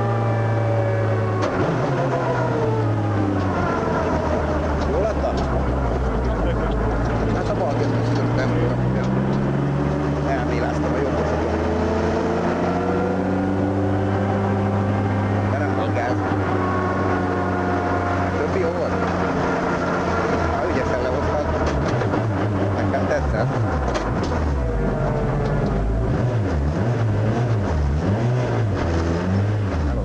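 Ford Focus WRC rally car's turbocharged four-cylinder engine heard from inside the cabin, its pitch rising and falling with throttle and gear changes at moderate speed. In the last several seconds the revs drop low and run unevenly as the car slows almost to a stop.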